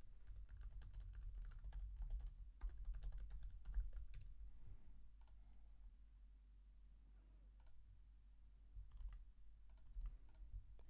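Typing on a computer keyboard: a quick run of keystrokes for about the first four seconds, then a few scattered clicks over a low steady hum.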